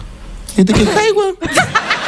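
A woman laughing hard, breaking into a quick run of short 'ha's in the second half.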